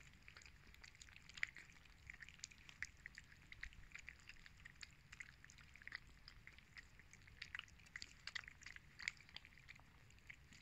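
Several cats eating chunks of wet cat food in gravy from paper plates: faint, irregular wet smacking and chewing clicks.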